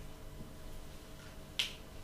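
A single sharp click about one and a half seconds in, over faint steady room hum.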